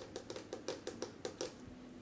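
Fingers tapping on the face of an oval artist's palette board, about nine quick taps, roughly six a second, stopping about a second and a half in.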